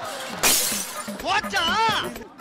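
A short, loud crash-like burst of noise about half a second in, followed near the end by a voice whose pitch wavers up and down.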